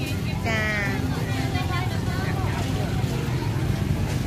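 A person speaking briefly about half a second in, then fainter voices of other people talking, over a steady low rumble.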